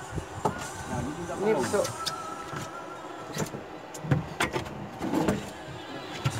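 A steady high motor whine under men's voices, with a few short knocks about three and a half seconds in.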